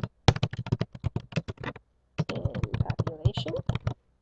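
Typing on a computer keyboard: a fast run of keystrokes, about eight a second, that pauses briefly about halfway through and then carries on.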